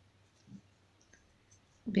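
Faint, sparse clicks and handling sounds of a metal crochet hook working through yarn as a slip stitch is made. A voice starts speaking at the very end.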